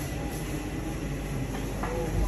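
Steady low rumbling background noise with no clear voices or distinct knocks.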